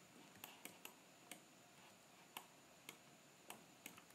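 Faint, scattered clicks of a computer mouse's buttons and scroll wheel, about seven in four seconds, over near-silent room tone.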